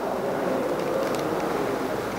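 Steady noise of vehicle traffic, with a few faint clicks.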